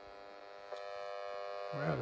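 Speaker of a handheld GEOVITAL field meter buzzing with a steady, many-toned hum that jumps louder about two-thirds of a second in. The buzz is the meter's audio signal of the exposure it is picking up, here a strong reading of several thousand microvolts.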